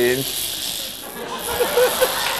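A man's short, strained vocal sounds near the end, over a steady background hiss, as he reacts to electric shocks from stimulator electrodes on his forearms.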